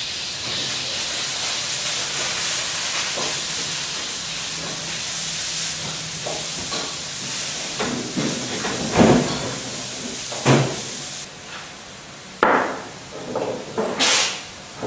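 Steady sizzling of food frying in a hot pan that cuts off suddenly about eleven seconds in. A few knocks come before it ends, and bowls clatter on a wooden table near the end.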